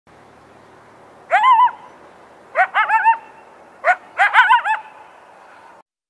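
An animal calling in short, pitched, arching yelps over a faint steady hiss: one call about a second in, a quick run of about four around three seconds, then one more followed by a quick run of about five near the five-second mark.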